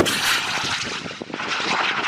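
Mk 153 SMAW shoulder-launched rocket fired: a sudden blast, then a rushing noise that carries on for about two seconds as the round flies downrange.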